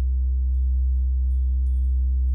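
Steady low electrical hum with a stack of buzzing overtones in the recording, unchanging throughout, with faint short high-pitched chirps above it.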